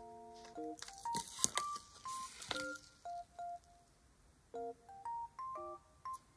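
Soft background music of plain, beep-like electronic notes playing a slow melody, with a few short chords. Paper sticker sheets rustle and slide against each other, loudest about a second in and again at about two and a half seconds.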